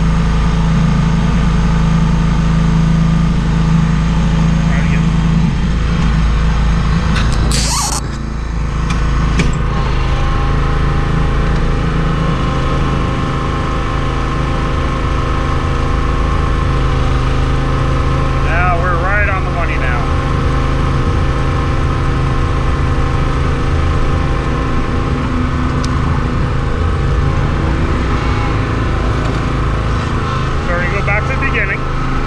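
Small gasoline engine of a Graco line striper running steadily, with a brief hiss and a slight drop in loudness about eight seconds in.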